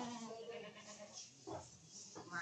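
Goats bleating: a long, drawn-out call that ends just after the start, then a short call about one and a half seconds in.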